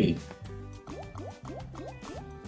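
Big Bass Bonanza online slot's game audio: its looping music with a quick run of about five short rising bubbly bloops, one after another, during a free spin.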